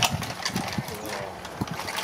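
Pressed-steel Tonka toy trucks and a loader being pushed and worked through loose soil: irregular clicks, knocks and rattles of their metal parts and tracks.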